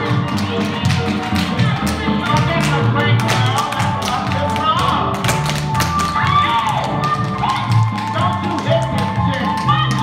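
A pop song with a sung melody and steady beat plays while shoes strike the wooden floor in quick, irregular taps: tap dancers' footwork.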